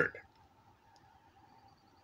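A man's word trailing off, then near silence: room tone with a faint steady hum and a faint click about a second in.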